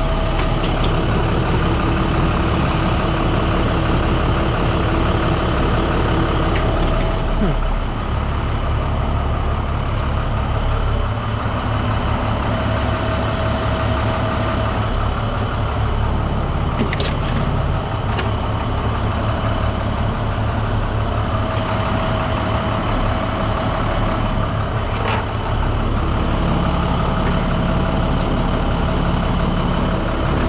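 Roll-off truck's engine running steadily on the road, its note shifting about 7 and 11 seconds in.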